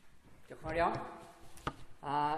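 A short spoken sound, then a single sharp knock near the end.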